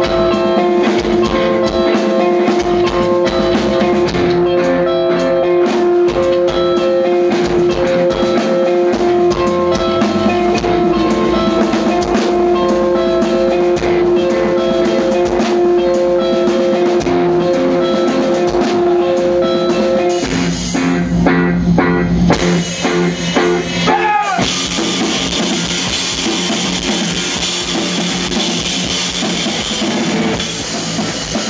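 Live band playing with a drum kit and electric guitars. A held note and a repeating figure of notes run over the drums, then the music changes about twenty seconds in and turns into a brighter section thick with cymbals.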